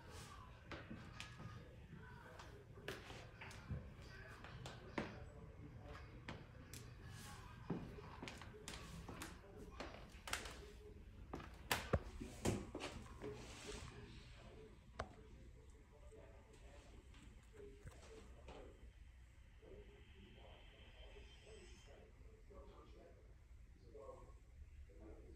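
Faint, muffled television voices from elsewhere in the building, too indistinct to make out. Sharp knocks and footsteps on a bare wooden floor and stairs come thickest in the first half, the loudest about twelve seconds in.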